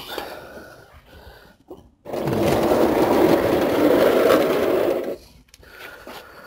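Aerosol can of brake cleaner spraying in one steady burst of about three seconds, starting suddenly about two seconds in and cutting off suddenly.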